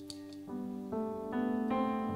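Live worship band playing an instrumental passage on keyboard and electric guitars, with no singing. A held chord is followed by a run of notes that enter about every half second, climbing step by step.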